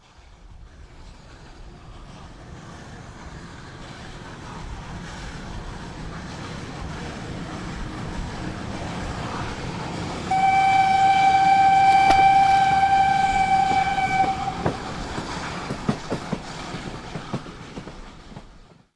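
Train passing: a rumble growing steadily louder for about ten seconds, then one long train whistle held about four seconds, then scattered rail clicks as it fades away.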